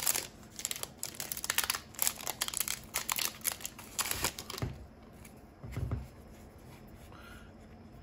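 Foil Yu-Gi-Oh Phantom Rage booster pack wrapper crinkling and tearing open by hand for about four and a half seconds, followed by two soft thumps and then quiet handling.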